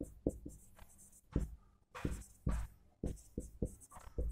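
Marker pen writing on a whiteboard: an irregular run of short, quick strokes as letters are written.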